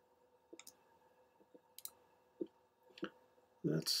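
Computer mouse clicking: a handful of short, separate clicks spread over a few seconds, over a faint steady electrical hum.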